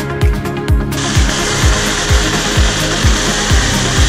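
Cordless drill driving a screw into a wooden board: a steady, gritty whir that starts about a second in and runs for about three seconds. Electronic music with a steady kick drum plays underneath.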